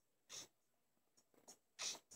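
Near silence: room tone with two faint, brief rustles.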